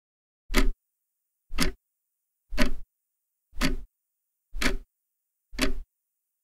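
A clock ticking once a second: six sharp, even ticks with dead silence between them.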